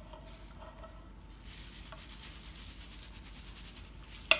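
Faint, soft rustle of dry rolled oats being poured onto moist salmon-cake mixture in a plastic bowl.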